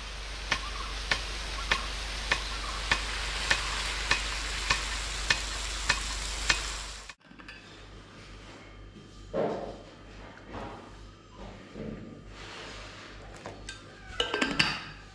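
Rain-gun irrigation sprinkler spraying water with a steady hiss and a low hum, its swing arm striking with a sharp click about every 0.6 seconds. About seven seconds in this cuts off suddenly to quieter, scattered handling sounds of a steel vacuum flask being opened and poured into a cup.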